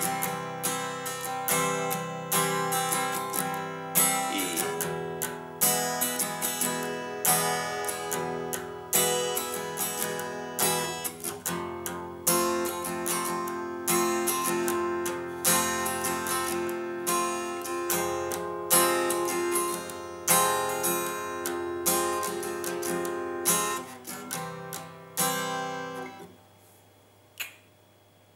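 Acoustic guitar strummed with a pick in a steady rhythm of down-strokes with occasional up-strokes, playing the four-chord progression C, E, F, F minor, each chord twice. The playing stops about two seconds before the end, the last chord ringing out.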